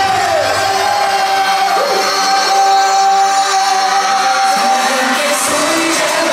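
Live pop music in a stadium, with singing over the band track and the crowd audible. One long note is held for about four seconds.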